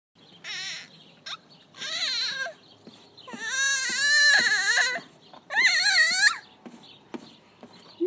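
A baby squealing with delight: four high, wavering squeals, the third the longest.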